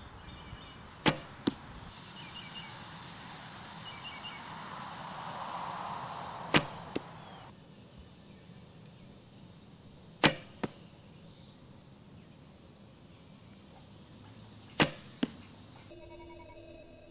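Four shots from a wooden longbow. Each is a sharp string snap on release, followed about half a second later by the smack of the arrow striking a 3D target.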